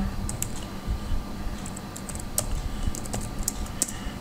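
Computer keyboard keystrokes: a tar command being typed, heard as a series of irregular light clicks.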